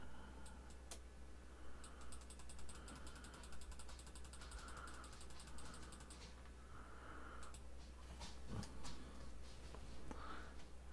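Computer mouse scroll wheel clicking in a fast, even run for about four seconds as the code is scrolled up to the top of the file, then a few single mouse or key clicks near the end.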